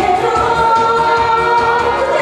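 A woman singing a Korean popular song into a handheld microphone over instrumental accompaniment with a steady beat, holding long notes.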